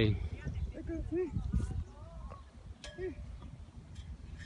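Faint background voices making short calls and exclamations over a steady low rumble, with no close speech.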